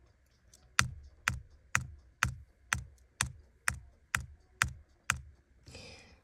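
Instrumental track playing back with a steady kick-drum beat at about two beats a second (around 125 BPM). Computer-keyboard key taps fall in time with the beat, tapping out the tempo.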